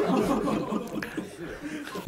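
Laughter following a joke, fading away over the first second and a half.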